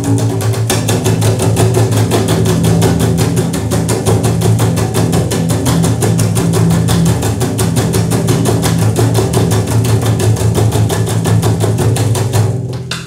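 Double bass played in a fast, even train of repeated percussive strokes over steady low notes.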